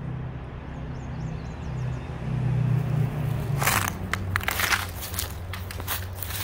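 A steady low hum, with a few faint high chirps in the first second. From about three and a half seconds in comes a stretch of crunching and crackling.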